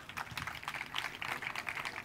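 Audience applauding: many quick hand claps at once, kept up at an even level.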